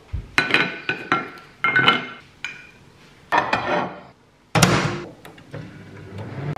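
Kitchen handling sounds: a series of sharp clinks and knocks of dishes, several with a short ringing tone like a ceramic plate being set down, and a heavier thump about four and a half seconds in.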